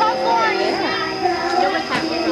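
Several children talking and calling out at once, their voices overlapping, with a thin steady high tone underneath.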